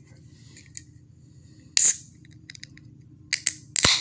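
Aluminium beer can being cracked open by its pull-tab: a short sharp hiss about two seconds in, then a few small clicks of the tab, with one sharp click near the end.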